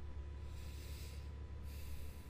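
A man breathing heavily close to the microphone, two noisy breaths through the nose, over a steady low electrical hum.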